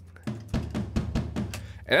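Superior Drummer 2 sampled acoustic drum kit playing back a tom groove with kick drum in a quick run of hits. The toms and kick are deliberately struck slightly out of step, giving a flammy, human-played feel rather than perfectly aligned hits.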